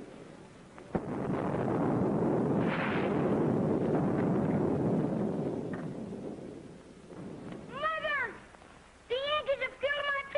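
A distant boom about a second in, followed by a long rolling rumble that swells and fades away over about six seconds, like far-off thunder or gunfire.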